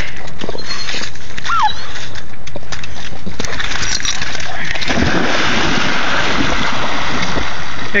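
Labrador retrievers splashing into a pond and swimming hard, the water churning. The splashing thickens into a dense, steady rush about halfway through.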